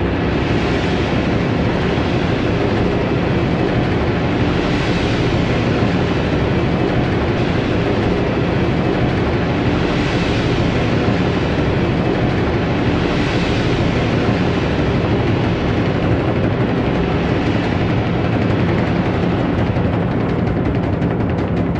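Contemporary chamber-orchestra music: a loud, dense, rumbling mass of rolled timpani and percussion under strings bowed very sul ponticello. Its hissy upper layer swells and fades several times.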